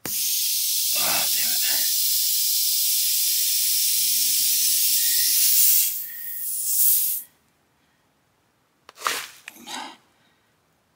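Compressed air hissing loudly out of a tire puncture around the plug-insertion tool, a sign the plug is not yet sealing; the hiss stops suddenly after about seven seconds. Short grunt-like effort noises come about a second in and near the end.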